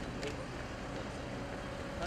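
Steady low hum of idling cars, with faint voices in the background.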